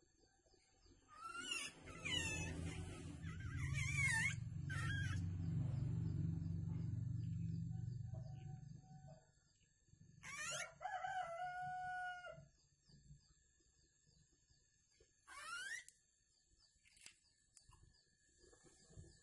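Birds calling: a run of quick gliding calls in the first few seconds, a longer call held on a steady pitch just past the middle, and a short rising call later on. Under the first calls a low rumble swells and fades by about halfway.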